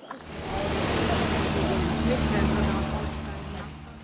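Old camper van driving slowly past, its engine and tyres growing louder over the first second and fading away towards the end.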